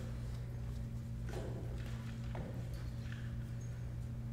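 Steady low hum from the hall's microphone and PA system, with a few soft knocks of the microphone being handled and passed at the podium.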